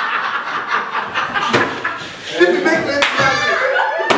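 A group of people laughing and talking over one another, with two sharp claps about a second and a half apart.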